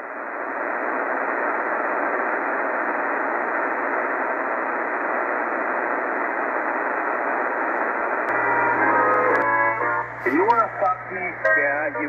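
Tecsun PL-880 shortwave receiver in lower-sideband mode on the 80-metre ham band, its speaker giving a steady rush of noise squeezed into the narrow sideband audio range for about eight seconds. Then a low hum comes up, followed by a short run of stepped tones, and a distorted voice from about ten seconds in.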